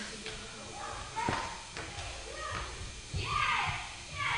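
Onlookers' voices, low and indistinct, with a short voiced exclamation near the end. A few light knocks come in the first two seconds, from the dancer's feet on the studio floor as she turns.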